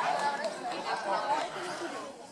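Indistinct chatter: several voices talking at once, none of them clear.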